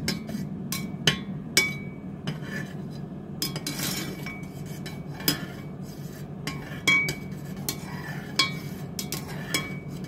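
Slotted metal spoon stirring in an enamel saucepan, tapping and clinking irregularly against the pan's sides and bottom, some clinks ringing briefly. A steady low hum sits underneath.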